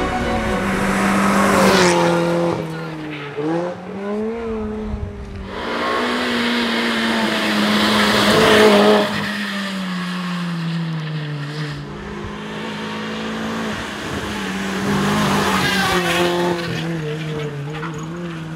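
Renault Twingo R1 rally cars' 1.6-litre four-cylinder engines driven hard, the pitch rising and falling several times through gear changes and lifts off the throttle, one car after another. Tyre noise rides over the engines at times.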